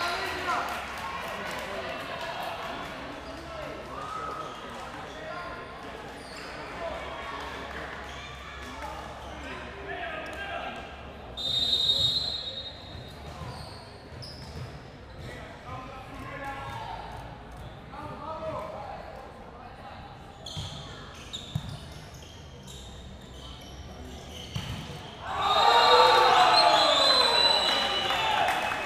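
Volleyball rally in an echoing gym: spectator chatter and the thuds of the ball being struck, a short shrill referee's whistle about twelve seconds in, then a loud burst of crowd cheering and shouting near the end as the point is won.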